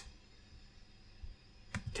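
Near silence: faint room tone with a low hiss, and one faint soft sound about a second in.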